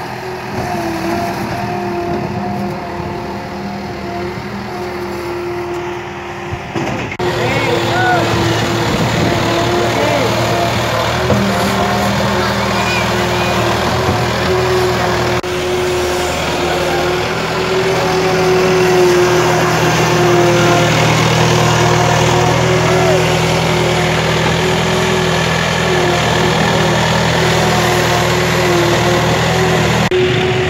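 JCB backhoe loader's diesel engine running steadily during road repair work, louder from about seven seconds in.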